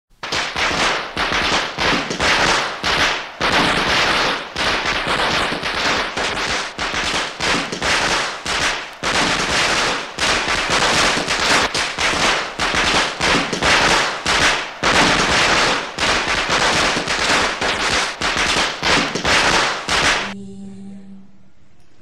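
A long string of firecrackers going off in a rapid, continuous crackle of sharp bangs, which stops suddenly about twenty seconds in.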